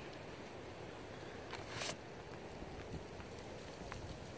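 Faint outdoor ambience with a low wind rumble on the microphone, and one brief rustle a little over a second and a half in.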